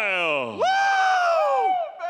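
Ring announcer's long, shouted drawn-out call of a fighter's name: a falling swoop, then one long held note that drops away near the end.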